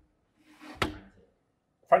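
A short spoken answer called out by a member of the audience, about a second in.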